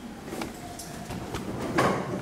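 Pages of a book being turned and handled: a few short paper rustles, the loudest near the end.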